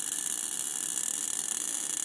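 Small-point spark gap of an air-cored Don Smith-style high-voltage coil rig firing continuously: a steady, rapid crackling buzz with a strong hissy high edge.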